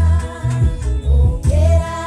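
A gospel worship song with a deep bass line. A woman and young girls are singing along.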